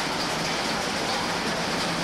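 A steady, even rushing noise like hiss or running water, with no voice or music in it.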